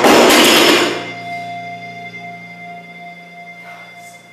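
A dropped barbell loaded with rubber bumper plates bouncing and rattling on the floor, loud for about the first second and then dying away, with music playing underneath.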